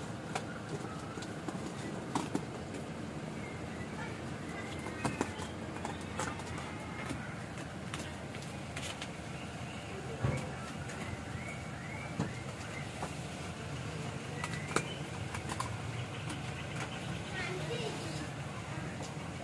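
Busy background ambience: birds chirping, indistinct voices and scattered light clicks and taps.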